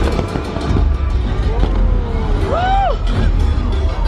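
Amplified show soundtrack from the lagoon's loudspeakers, overlaid with a steady low rumbling roar and rapid crackling bangs from pyrotechnic flame and firework effects. A short rising-then-falling call cuts through about two and a half seconds in.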